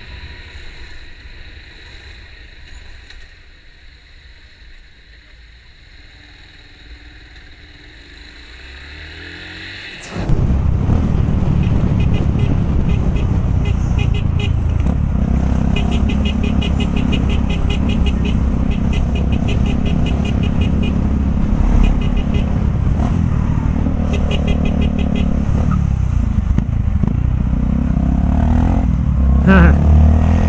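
Motorcycle ride in traffic heard from an onboard camera. For the first ten seconds the engine and road noise are quiet. Then the sound jumps abruptly to a much louder engine and wind rumble, with bursts of rapid ticking in it.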